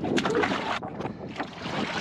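Water sloshing and splashing inside a swamped plywood sailing skiff as the sailor shifts his weight in it, with irregular small knocks and splashes and a brief lull about a second in.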